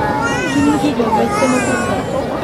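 Spectators' voices talking and calling out, one of them high-pitched.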